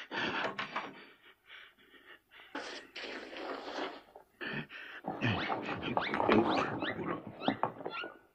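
Animal-like vocal noises in short broken bursts: grunts and gasps, with rising squeals through the second half.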